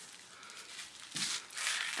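Wrapping on a small gift package rustling and crinkling as it is handled and opened, faint at first and louder about a second in.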